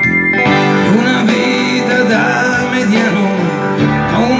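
Pop-rock backing track playing at full level, with a guitar melody over the band that takes over from steady keyboard chords shortly after the start.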